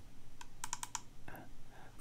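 A quick run of about five light clicks from a computer mouse, double-clicking to open a video file.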